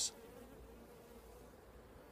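Faint, steady buzzing of honeybees flying around the hives.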